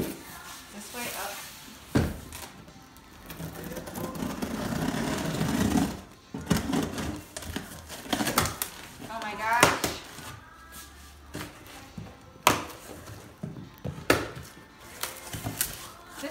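A large cardboard box being tipped over and handled on a wooden floor, then cut open with scissors: cardboard scraping and rustling, with about four sharp knocks and clicks. Music and a voice carry on underneath.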